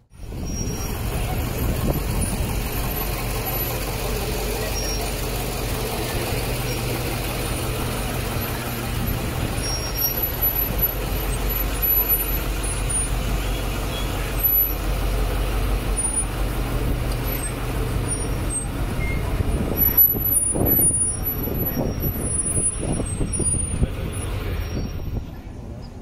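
A bus's diesel engine running close by, a steady low rumble.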